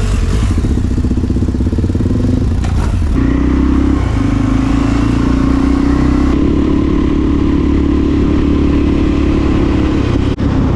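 Suzuki DR-Z dual-sport's single-cylinder four-stroke engine idling with a pulsing beat, then pulling away and running steadily under load, with a brief dip about four seconds in.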